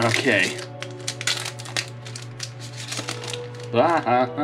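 Foil wrapper of a Yu-Gi-Oh! booster pack crinkling and tearing as it is opened by hand: a run of quick crackling clicks. Background music plays under it.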